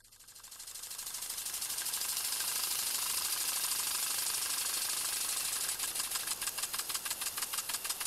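Water sprinklers running: a hiss of spray with a rapid, even ticking, fading in over the first couple of seconds.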